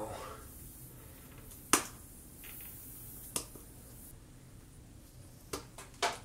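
Needle-nose pliers clicking against a small headless metal object stuck in a tire's tread as it is worked loose: one sharp click a little under two seconds in, the loudest, a fainter one past three seconds, and two more near the end.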